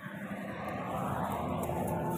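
A distant engine, steady and slowly growing louder, with a faint hum running through it.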